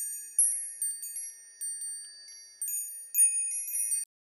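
Twinkling chime sound effect: high, bell-like tones struck about four times, each ringing on and overlapping the last, then cutting off sharply at the end.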